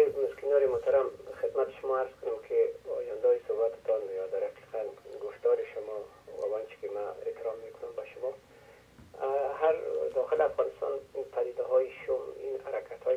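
A caller's voice speaking over a telephone line, thin and narrow in tone, with a short pause about eight seconds in.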